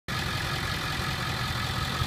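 A 2002 Ford F-350's 7.3-liter Power Stroke V8 turbo-diesel idling steadily through a straight-piped exhaust, with a pulsing low rumble.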